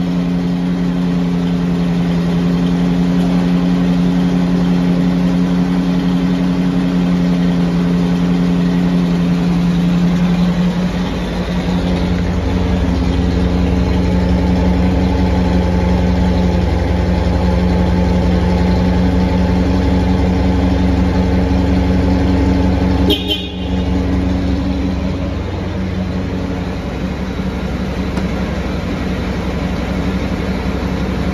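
Mercedes-Benz 450 SL's 4.5-litre V8 idling steadily. Its low exhaust rumble gets louder about twelve seconds in, with one brief knock a little past the twenty-second mark.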